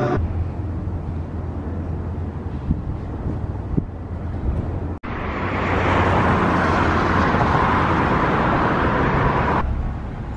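Noise of a moving road vehicle heard from inside: a steady low rumble at first, then, after a sudden cut about halfway, a louder rushing road and wind noise that stops abruptly near the end.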